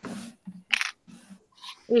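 Small hard objects clinking and clattering as they are handled, in several short bursts.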